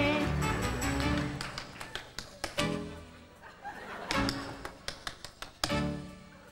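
Tap dancing on a stage floor: quick, irregular runs of shoe taps, punctuated by short chord hits from a band.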